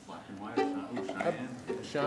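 Men's voices talking off-microphone between songs, mixed with a few plucked string notes from the band's instruments.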